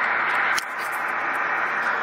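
Steady hiss of 10-metre band noise from an HF transceiver's speaker, held within the narrow voice passband of single-sideband reception; the hiss drops a little about half a second in.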